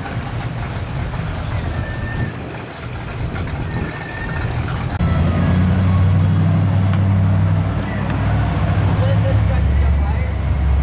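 Classic cars cruising past on a street, their engines and exhausts a continuous low rumble that grows much louder about halfway through as a car passes close.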